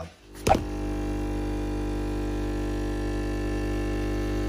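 Espresso machine pump buzzing steadily as it pulls a shot into a glass, starting with a click about half a second in.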